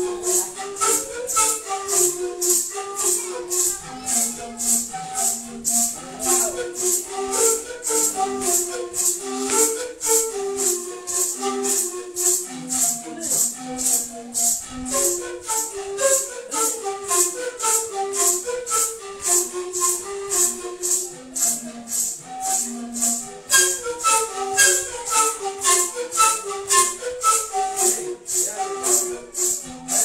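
Traditional Kuna dance music: a repeating stepwise panpipe melody over maracas shaken in a steady beat about twice a second, the maraca strokes the loudest part.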